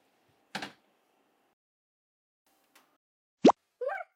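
A short click about half a second in. Near the end comes a loud, quick upward-sliding cartoon 'plop' sound effect, followed by a brief squeak.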